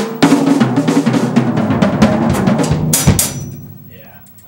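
Drum kit played fast: rapid snare and tom strokes over bass drum. About three seconds in comes a cymbal crash, and the sound then fades away.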